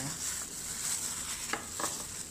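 A plastic-gloved hand rubbing seasoning onto raw salmon fillets: a soft, crinkly rubbing over a steady high hiss, with two short clicks near the end.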